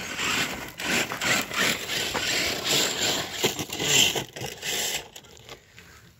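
Traxxas TRX-4 RC crawler spinning a donut on loose gravel, its JConcepts Fling King tyres scrabbling and spraying gravel in a rough, crunching noise. The noise stops about five seconds in as the truck tips over.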